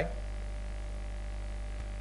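Steady low electrical hum, like mains hum, with no other sound over it.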